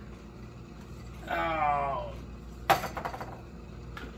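A short wordless vocal sound that falls in pitch, then about a second later a sharp clack followed by a few lighter clicks.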